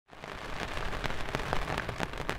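Rain pattering steadily, with many separate drops hitting close by, fading in from silence at the very start.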